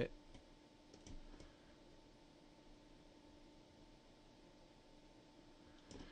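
A few faint computer mouse clicks in the first second and a half, then near silence with a faint steady hum.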